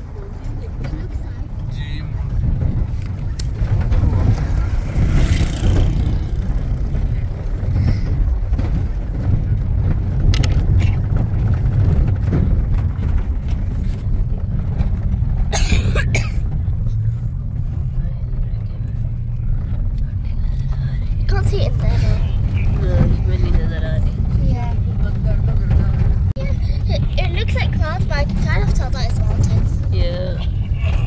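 Steady low rumble of a vehicle driving on an unpaved dirt road, heard from inside the cabin, with a few sharp knocks around the middle.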